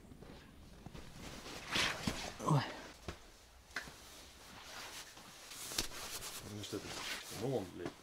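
Brief, indistinct talk near the middle and again toward the end, mixed with a few sharp knocks and clicks of handling noise.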